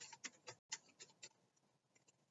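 Faint run of quick, light clicks and taps from tarot cards being shuffled in the hands, thinning out a little past halfway.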